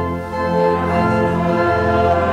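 Church organ playing sustained chords, with a brief dip and a change of chord about half a second in.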